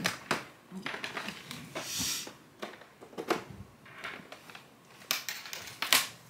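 Scattered small clicks and taps, with a brief rustle about two seconds in, from a small plastic handheld computer being handled and a power cable being plugged into it.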